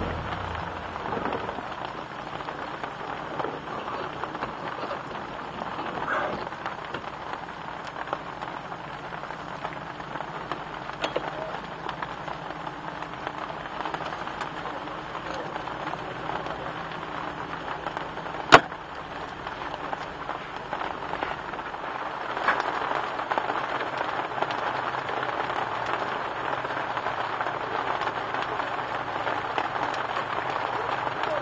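Steady rain falling on a car's wet bonnet and on the camera, growing heavier in the last third. A single sharp click sounds about two-thirds of the way through.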